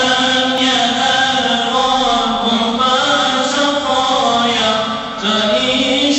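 Male devotional chanting of a mevlud hymn, with long held notes that bend and turn in ornamented phrases, and a short break for breath about five seconds in.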